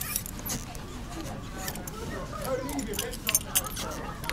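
Lever handle of a uPVC glass door rattling and clicking as it is pushed and pulled, the door staying shut; a few sharper clicks a little past three seconds in.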